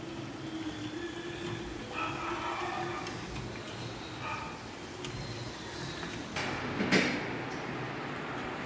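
Pieces deep-frying in hot oil in a small kadai on a gas burner, a steady sizzle as a slotted spoon turns them. A single sharp clink near the end.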